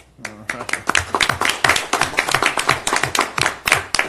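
A small audience applauding, with separate hand claps heard in a quick uneven run; it starts about half a second in and fades right at the end.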